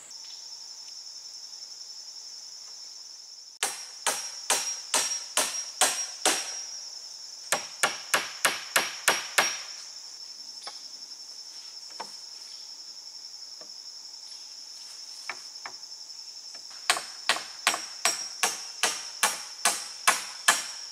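Hammer blows on a wooden pole frame, in three runs of several strikes at about two or three a second, with a few single knocks between. A steady high drone of insects runs underneath.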